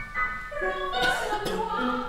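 Operatic soprano singing with piano accompaniment, with a couple of sharp accented attacks about a second in.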